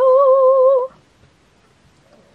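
A woman humming one high held note with a slight wavering vibrato, just under a second long.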